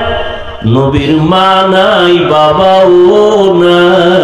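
A man's voice chanting a sermon in a melodic, sung intonation, holding long notes that rise and fall. The voice comes in about half a second in, after a brief pause.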